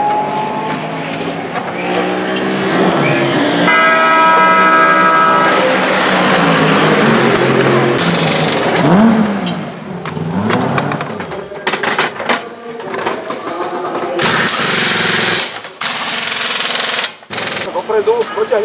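Pneumatic wheel gun firing in loud bursts during a race-car tyre change: a short burst about halfway through, then two of about a second each near the end. Voices carry throughout.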